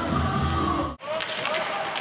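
Highlight-reel music with a heavy bass beat cuts off suddenly about halfway through. Live ice hockey rink sound follows: sharp knocks of sticks and puck on the ice and boards, with voices in the arena.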